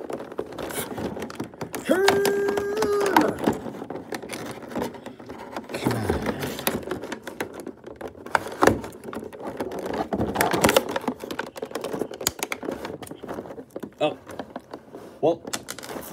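Clear plastic blister packaging crinkling and rustling, with scattered clicks and scraping as a pointed tool works at a plastic foot strap holding a toy figure. A sharp snap stands out about halfway through.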